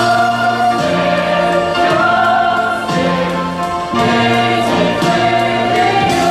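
Musical-theatre ensemble singing a chorus in long held notes over instrumental accompaniment with a moving bass line.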